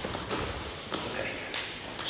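Grapplers shifting their bodies and shuffling bare feet and knees on foam mats, with a few soft taps and bumps.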